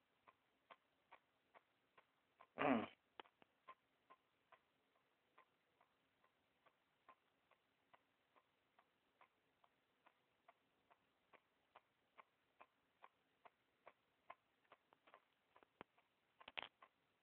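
Faint, regular ticking, about two and a half ticks a second, over a faint low hum, with one brief louder burst of noise a little under three seconds in.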